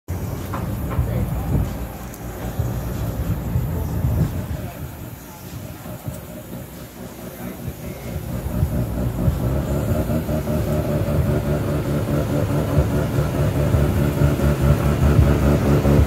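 Mazda RX-7's engine running at a steady idle, a low drone that grows gradually louder over the second half.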